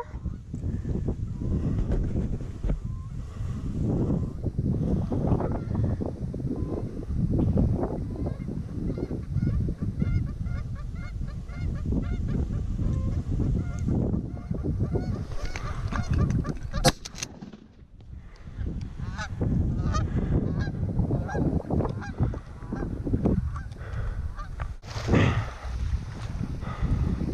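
Canada goose honks and clucks, repeated in short series, over a steady rumble of wind on the microphone. A single sharp knock comes about two-thirds of the way through.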